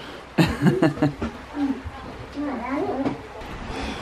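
Speech: people talking, with some chuckling.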